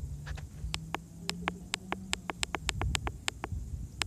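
A quick run of small sharp clicks, about five a second, over a faint low hum and rumble.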